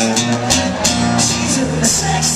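Amplified acoustic-electric guitar strummed in chords, with sharp strokes about half a second in, near one second and near the end.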